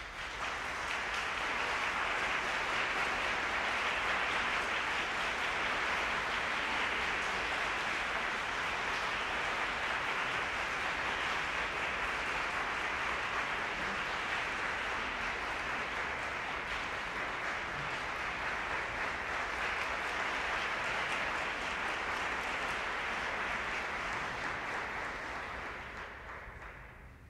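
Concert audience applauding steadily for about 25 seconds after a piano piece ends, dying away near the end.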